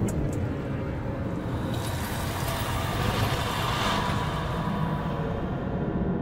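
A steady, rumbling, wind-like noise that swells a few seconds in, its hiss dying away near the end.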